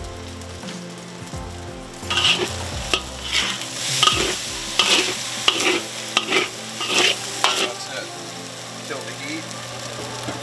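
Fried rice sizzling in a hot steel wok on a gas stove. From about two seconds in, a spatula scrapes and tosses it against the wok in quick strokes, roughly one or two a second, before it settles back to a steady sizzle near the end.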